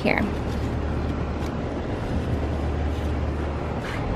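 Wind rumbling on the microphone outdoors: a steady low rumble with a faint hiss above it and a couple of light clicks.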